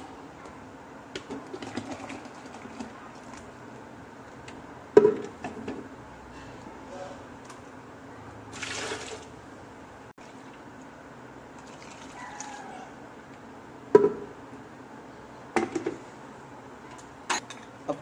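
Ground raw-mango juice being strained through a steel mesh strainer into a steel bowl: faint liquid trickling, with a few sharp metal taps of the strainer against the bowl, loudest about five seconds in and again near fourteen seconds.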